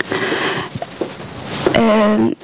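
Breath noise close to a handheld microphone, a short breathy hiss, then a woman begins speaking into it near the end.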